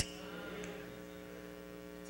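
Faint, steady electrical mains hum, a low buzz of several tones that stays constant.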